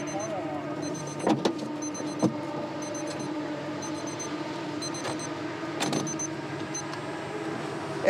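A steady mechanical hum holds one constant pitch throughout. It is broken by a few sharp clicks and knocks as a race car's quick-release steering wheel is handled and fitted into place.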